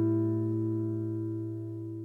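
Closing music ending on one held chord that rings on and fades away.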